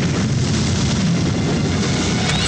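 A loud, steady low rumbling roar from the trailer's soundtrack, with no clear voice or melody in it.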